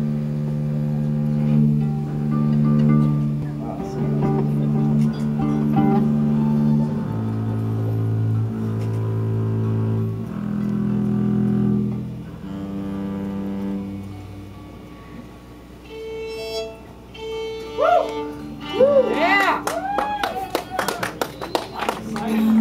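Live band playing slow, sustained low notes on bowed strings with electric guitar, the pitch changing every second or two; the playing fades about two-thirds of the way through. Near the end, wavering high whoops and claps come from the audience.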